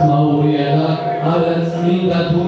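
A man reciting poetry in Georgian into a microphone in a drawn-out, chant-like voice, over a steady sustained musical tone.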